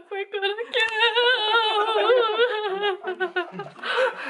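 A woman laughing hysterically: short bursts of laughter, then from about a second in a long, high-pitched, wavering laugh lasting about two seconds, then short bursts again.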